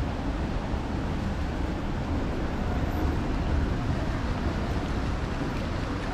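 Steady city street traffic noise, an even low rumble with no single event standing out.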